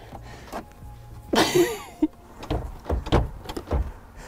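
Knocks and clunks of a Volkswagen Multivan's movable rear seat being swivelled and shifted on its floor rails, with a brief scraping rattle about a second and a half in and a run of four heavy thumps in the second half.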